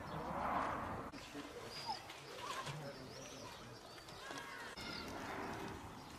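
Small birds chirping, with short high whistles rising and falling at scattered moments. A short rush of noise about half a second in is the loudest sound.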